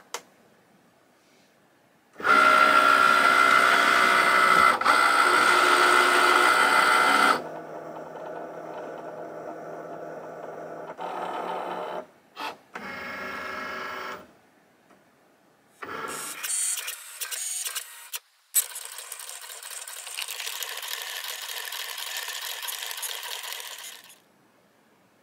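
Cricut Maker cutting machine's motors running after the Go button is pressed. A loud carriage run with a steady whine lasts about five seconds, then quieter stop-start motor runs follow as the machine checks its tools and then scores and draws with the pen.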